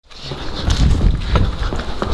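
People running in a panic with a handheld camera: hurried footsteps and knocks over a heavy, jostling handling rumble on the microphone, starting just after a sudden cut to silence.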